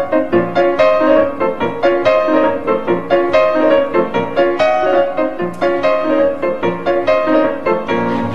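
Instrumental background music: a melody of quick, evenly spaced notes, several a second.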